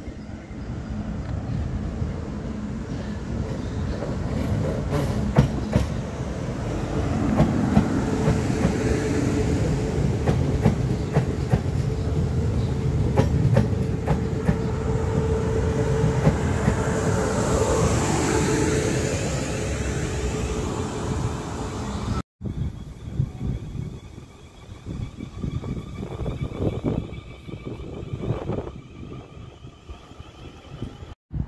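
South Western Railway electric multiple unit running into the platform, its wheels clicking over rail joints and a steady motor whine that bends in pitch near the end as it slows. About two-thirds of the way in the sound cuts abruptly to quieter, more distant train noise.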